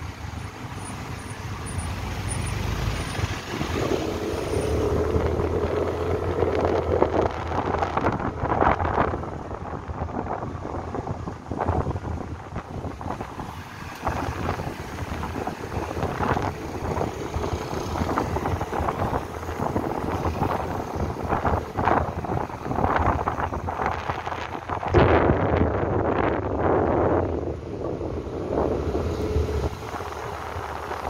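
Riding a motorbike through city traffic: the engine running under steady wind buffeting on the microphone, with the engine note strengthening a few seconds in and again near the end, amid the rumble of surrounding cars and trucks.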